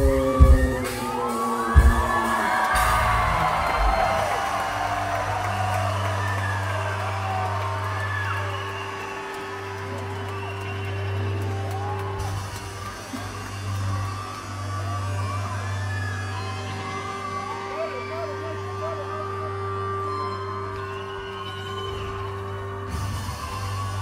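A rock band's last loud hits at the end of a song, then a concert crowd cheering, whooping and whistling over a low, steady droning note from the stage as the next song begins.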